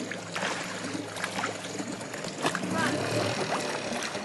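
Small outboard motor on an inflatable dinghy, idling with a steady low hum.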